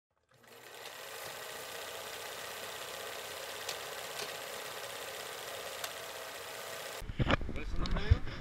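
A steady, even whirring hiss fades in and holds, broken by a few faint clicks. Near the end it cuts off abruptly and gives way to irregular low bumps and rumble, the sound of handling on an outdoor camera.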